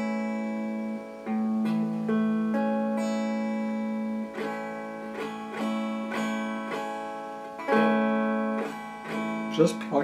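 Electric guitar played clean, chords strummed one at a time and left to ring, with short breaks between them as a beginner practises changing chord shapes.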